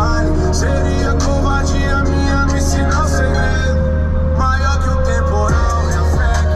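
Brazilian hip hop track playing, with a steady beat of crisp hi-hat ticks over heavy bass and melodic lines.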